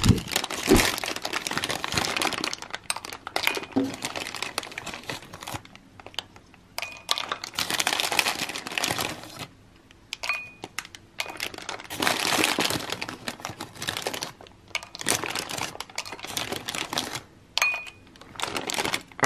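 A clear plastic bag crinkling in bursts as a hand rummages through dried soapnut (reetha) shells, with light clicks of the brittle shells being dropped one by one into a glass bowl.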